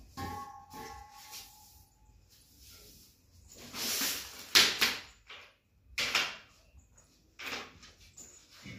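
Hand broom swept over a hard kitchen floor in several short brushing strokes, with a sharp knock about four and a half seconds in. A faint ringing tone sounds briefly at the start.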